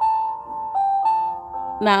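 Background music of held single notes, the melody stepping to new notes a few times.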